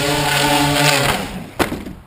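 Quadcopter's electric motors and propellers whirring inside a foam ducted shroud, a steady multi-tone hum that winds down about a second in, with one sharp knock near the middle of the spin-down as the craft comes down. The craft is flying unstably, its gyros set to 100% and over-compensating.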